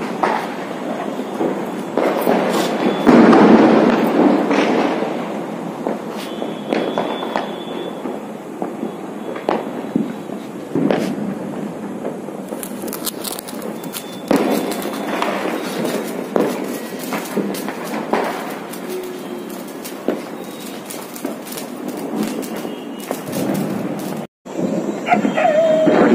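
Diwali firecrackers and fireworks going off, a continuous run of pops and crackles with a louder burst about three seconds in.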